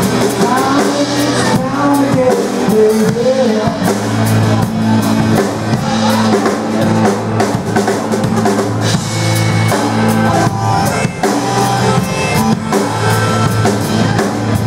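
Live rock band playing an instrumental passage: a drum kit with bass drum keeping a steady beat under a strummed acoustic guitar.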